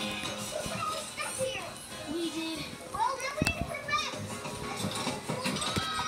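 Children's cartoon soundtrack playing from a television: excited high-pitched character voices over background music, with a sharp click about three and a half seconds in.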